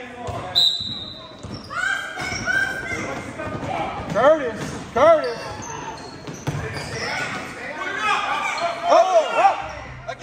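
A basketball being dribbled on a hard gym floor while players' shoes squeak, echoing in a large hall. The short arched squeaks come in pairs about four to five seconds in and again near the end.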